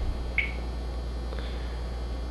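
A pause between spoken phrases, holding a steady low background hum, with one brief faint high blip about half a second in and a faint tick later.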